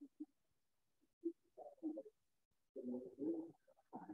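Faint low cooing of a bird in a few short phrases with quiet gaps between them; the longest phrase comes near the end.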